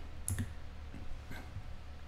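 A few faint clicks, the clearest about a third of a second in and another just past the middle, over a steady low hum.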